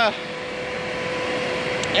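Diesel engine of a logging machine running steadily: a constant hum with a steady mid-pitched tone.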